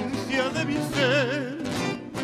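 Male voices singing with a wide vibrato over nylon-string acoustic guitars. They hold a long final note that breaks off near the end.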